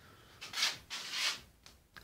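Handling noise from the hand-held camera: two brief rubbing swishes as the device is moved and touched close to its microphone.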